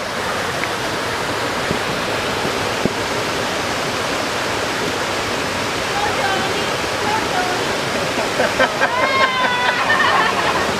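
Small waterfall pouring over rocks into a pool, a steady rush of water. Voices call out over it in the last couple of seconds.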